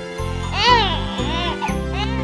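A cartoon baby's crying, a run of short rising-and-falling wails, over a children's song backing track with a steady bass line.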